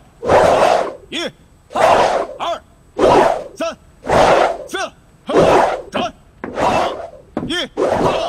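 A sword-drill class shouting in unison with each practice stroke, answered by a single voice calling the count, in a steady rhythm of about one shout a second.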